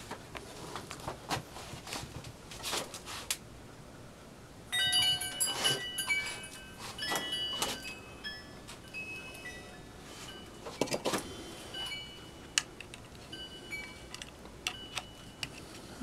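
Small metal objects clinking and knocking together, with scattered clicks and, from about five seconds in, many short ringing notes at different pitches.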